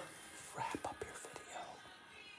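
Quiet whispering, with a few short clicks in the middle of the stretch.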